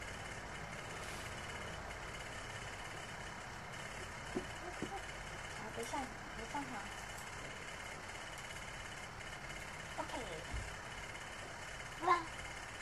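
Steady room noise, likely from a running electric fan, with a few brief soft vocal sounds and small clicks of a spoon against a ceramic bowl as a toddler eats. The vocal sounds come in two short clusters, around the middle and again near the end.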